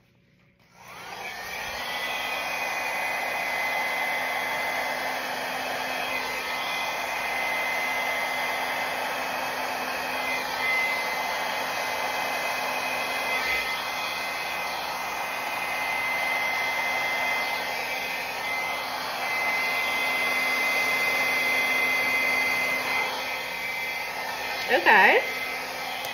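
Handheld hair dryer switched on about a second in and running steadily with a high whine, blowing wet acrylic pouring paint outward across a canvas to open it into a bloom.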